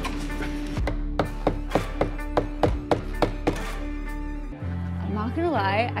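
A mallet driving a chisel to chip bark off the edge of a live-edge wood slab: a quick run of about a dozen sharp strikes, roughly four a second, that stops a little past halfway.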